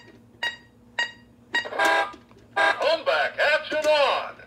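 Electronic sound effects from a Road Rippers "It Comes Back" toy Hummer H2's sound module: three short beeps about half a second apart, then a brief burst and a stretch of the toy's recorded voice-like sounds.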